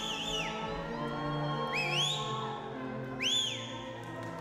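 Orchestral background music with three high whistles laid over it, one at the start, one about two seconds in and one near the end. Each whistle slides up and then back down.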